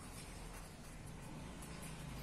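Faint sound of a pen writing on a sheet of paper on a clipboard, the tip making light strokes as letters are written.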